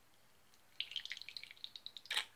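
Eye wash solution dripping and trickling from a squeeze bottle into a small plastic eye cup. It starts about a second in as a quick, irregular run of small high-pitched drips.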